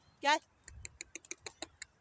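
A man calls "gel" once. Then comes a quick run of about ten short, high clicks, roughly seven a second, lasting about a second, over a low rumble of wind on the microphone.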